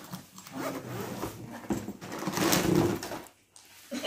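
Zip of a soft-sided fabric suitcase being pulled open around its edge in a few rasping strokes, the longest and loudest about two and a half seconds in.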